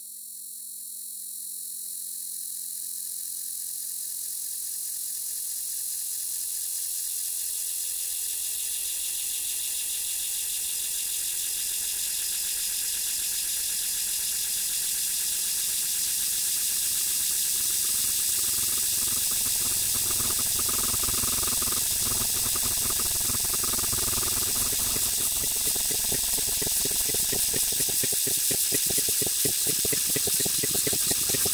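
Electroacoustic music: a high hiss that swells slowly and spreads down into lower, fuller noise, turning into a dense, rapidly fluttering texture in the second half.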